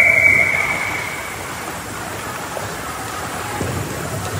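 Indoor ice hockey game sound in a reverberant rink: a steady noisy wash of skating and play, opening with a held high-pitched tone of about a second, then a few sharp stick or puck clicks later on.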